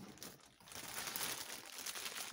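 Packaging crinkling and rustling as hands rummage through a parcel, starting about half a second in and going on steadily.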